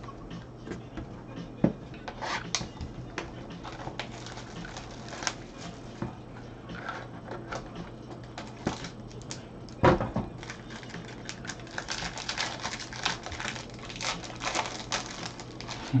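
Gloved hands handling a trading-card box and its cards: scattered clicks and taps of cardboard and plastic, a sharp knock about ten seconds in, then a quick run of clicking and rustling near the end, over a low steady hum.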